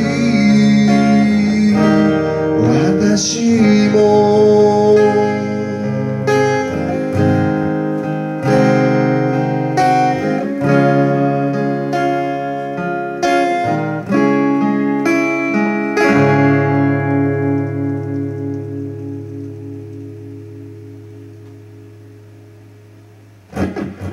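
Solo acoustic guitar and voice: a sung phrase trails off in the first few seconds, then the guitar plays a picked and strummed interlude. About sixteen seconds in, a final chord is left to ring and slowly dies away.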